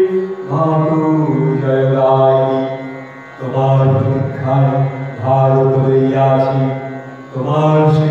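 Devotional mantra chanting with musical accompaniment, sung in long held phrases of about two seconds each, with short breaks between them.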